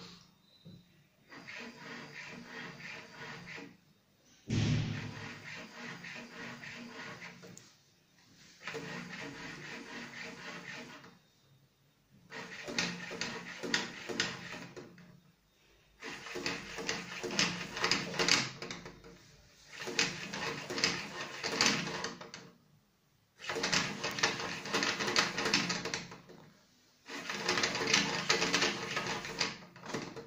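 LEGO WeDo 2.0 motor shaking a tall LEGO tower on its earthquake-test base, in about nine runs of roughly three seconds each with short pauses between them. The later runs are louder, with more rattling of the LEGO parts.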